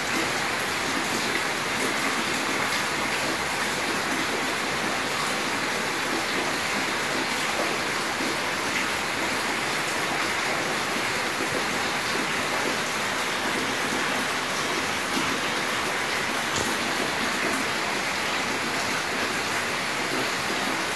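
A steady, even hiss with no distinct strokes or pauses.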